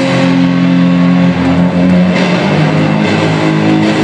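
Live rock electric guitar played loud through a concert PA, long held notes that change pitch a couple of times, heard from far back in the crowd.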